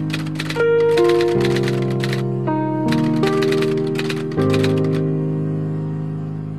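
Typewriter keys clacking in fast runs, three bursts of keystrokes, over music of sustained chords that change every second or so. The typing stops a little past the middle, leaving the held chords.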